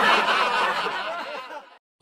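Laughter sound effect, several voices chuckling and snickering together, fading away and stopping just before the end.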